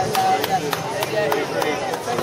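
Gymnast's hands slapping down on a pommel horse while swinging circles: sharp, evenly spaced taps, about three a second.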